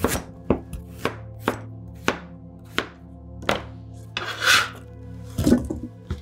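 Chef's knife chopping a peeled raw potato on a cutting board: about seven crisp knocks roughly half a second apart, spacing out. They are followed by a short scrape a little past four seconds in and two more knocks near the end.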